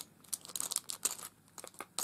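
Clear cellophane craft packets crinkling as they are handled, in short, irregular crackles with a sharp click at the start and a quieter stretch in the middle.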